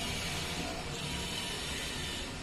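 Steady low hiss with no distinct knocks or scrapes.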